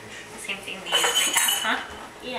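A glass mason jar clinks and rings briefly about a second in, as smoothie is poured into it from a blender jar.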